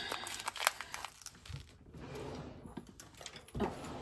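Small clear plastic resealable bag crinkling and rustling in irregular bursts of clicks and crackles as it is pulled open by hand.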